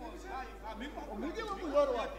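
Overlapping voices of several people speaking or reciting at once.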